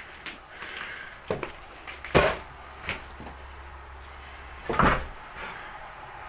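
Footsteps on old wooden floorboards strewn with broken plaster: a few sharp knocks and crunches, the loudest about two seconds in and another near five seconds, with fainter clicks between.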